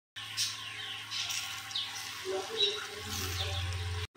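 Small birds chirping a few times, short downward-sliding calls, over a steady low hum that gets louder about three seconds in.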